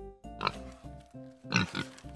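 A pig grunting, twice: once about half a second in and again, louder, about a second later, over light keyboard music playing a simple tune.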